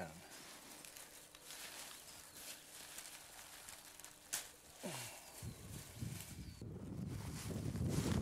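Faint rustling and footsteps among crop stalks being handled in a field, with a sharp click about four and a half seconds in and a low rumble over the last few seconds.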